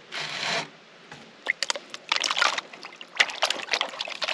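A short scraping rush, then irregular splashing and sloshing as a rubber riffle mat from a sluice is swished and rinsed in a plastic gold pan of water, washing the gold-bearing concentrates off the mat during cleanup.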